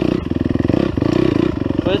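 Dirt bike engine running as it is ridden over the track, its note dipping briefly a couple of times as the throttle is eased; a man's voice comes in at the very end.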